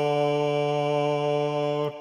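Low voices in a choral part of a symphony, holding one steady sung note that is cut off sharply just before the end.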